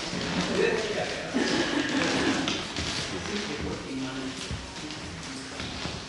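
Indistinct chatter of several people in a meeting room as an audience settles, with scattered taps and knocks of movement.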